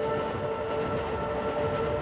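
Electric commuter train running past at steady speed: a rumble of wheels on the rails under a steady whine of several held tones.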